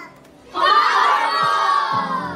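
A group of young children shouting together in unison. The shout starts about half a second in and falls away near the end.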